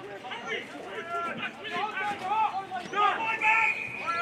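Indistinct shouting and calling from people at a football match, with one long drawn-out shout about three seconds in.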